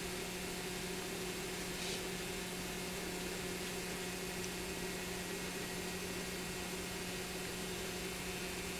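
Steady hiss with a low electrical hum, the noise floor of an old VHS recording in a quiet room. A faint short scratch comes about two seconds in.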